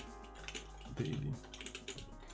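Typing on a computer keyboard, a quick irregular run of key clicks.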